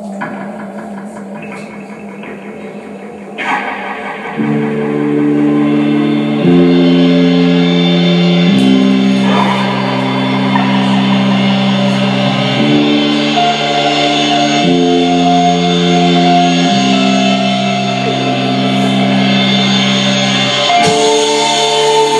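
Live rock band playing an instrumental intro on electric guitars and bass. A quiet, rapidly pulsing guitar part swells about four seconds in into loud sustained chords, with the bass notes changing every two seconds or so.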